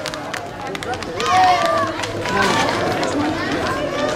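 Voices of people in the street calling out, with scattered sharp clicks of running steps on the pavement in the first second.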